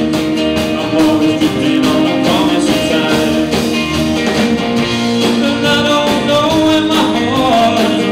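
Live band music: acoustic guitar and a semi-hollow electric guitar playing a song together, with a melodic line moving up and down in the second half.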